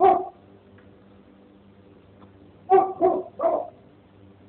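A dog barking: one bark at the start, then three quick barks in a row near the end.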